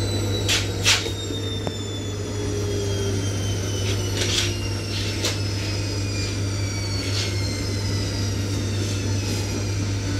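Washing machine's spin cycle winding down: the motor's whine falls slowly in pitch over a steady low hum, with a few sharp knocks.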